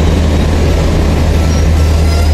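Diesel-hauled Indian Railways express train at a station, running with a steady low engine rumble over a constant wash of rail noise.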